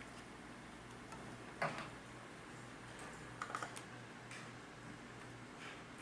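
A few faint clicks from a laptop being operated, with a small cluster of quick ticks about three and a half seconds in, over a low steady hum.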